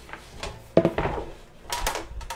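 Wire cooling rack set down on a metal baking pan: a sharp metallic clatter a little under a second in, then a few lighter clinks near the end.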